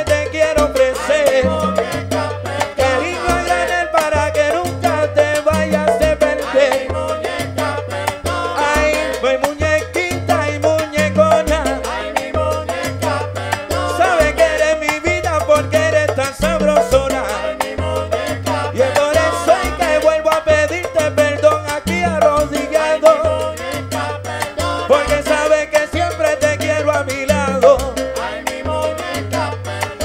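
Live salsa band playing: a stepping bass line under congas and other Latin percussion, with the band's melodic parts over it.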